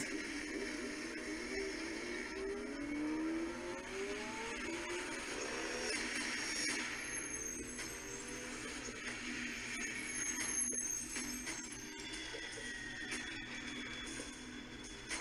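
TV drama soundtrack of a car pursuit: car engines rising in pitch as they accelerate, mixed with background music.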